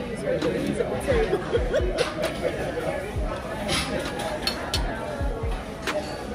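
Background music with a steady low beat under chatter and murmured voices, broken by a few short sharp clicks of forks and cutlery on plates.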